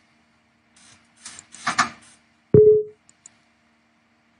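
Light computer-mouse clicks, then a rustling noise about a second in. At about two and a half seconds comes a loud thump with a brief ringing tone that fades quickly, followed by a quick pair of mouse clicks.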